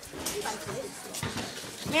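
Children's voices talking quietly, with a few light knocks.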